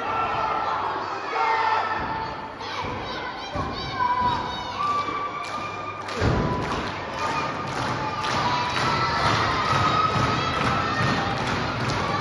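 Wrestlers' bodies thudding on the wrestling ring's canvas, a few knocks early on and one loud thump about six seconds in. A crowd with children shouting and cheering.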